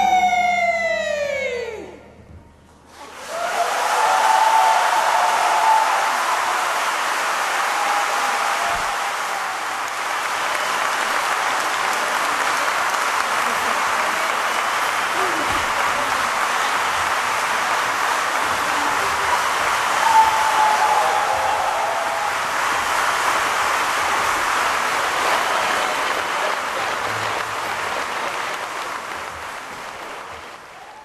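A women's choir's last sung note slides down in pitch and breaks off about two seconds in. After a brief pause, a concert-hall audience applauds steadily, with a few voices calling out, and the applause fades near the end.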